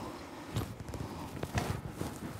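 Rustling and light clicks of an SCBA harness as its shoulder straps are cinched down and the hardware is handled, with a few sharper ticks about half a second and a second and a half in.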